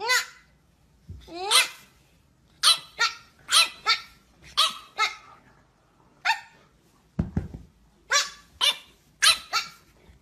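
French bulldog puppy barking: a dozen or so short, high yaps in irregular groups, some in quick pairs, the second one rising in pitch. A low thump comes about seven seconds in.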